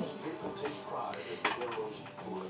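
Hard plastic clicks and knocks from a baby's activity-centre toy as small hands bat at its buttons and pieces: a few sharp taps, the loudest about one and a half seconds in.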